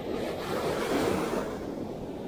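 Sea surf breaking and washing up the beach. It swells in the middle and then eases off.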